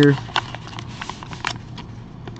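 Plain white paper mailing envelope handled and worked open by hand: scattered short paper crinkles and clicks.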